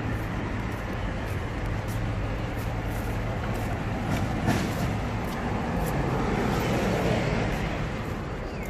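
Steady road traffic noise beside a street, with faint footsteps on stone paving slabs.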